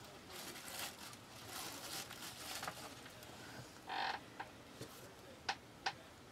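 Faint handling sounds of a sheet of polymer clay being brought back to the worktable: soft rustling, a short scrape about four seconds in, and a few light clicks near the end.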